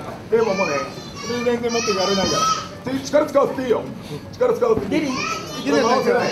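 Raised, high-pitched voices shouting from ringside in short bursts, the cornermen and crowd calling out to fighters grappling on the mat.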